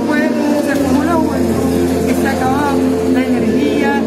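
A man talking in Spanish over loud background music with long held tones, and a steady low hum underneath.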